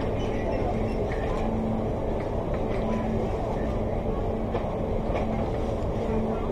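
Busy convenience-store ambience: a steady low rumble of room noise with indistinct customer chatter in the background.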